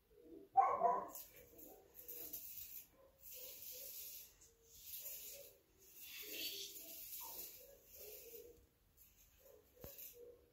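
A short pet call about half a second in, the loudest sound, followed by soft swishing noises about once a second.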